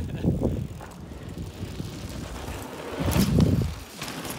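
Carbon-fibre enduro mountain bike rolling along a dirt jump trail, its tyres on the dirt growing loudest about three seconds in as it passes close by.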